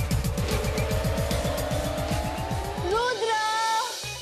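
Background music: a fast drum roll under a slowly rising sweep builds for about three seconds, then cuts off into a short wavering dramatic sting.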